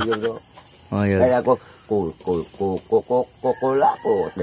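Crickets trilling, a high pulsed chirp that carries on steadily. From about a second in, a person's voice comes and goes over it in short syllables.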